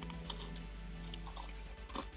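Quiet background music with steady held notes. Over it come a few faint crunches near the start and again midway, from a bite into a doughnut topped with crunchy praline pretzels and the chewing that follows.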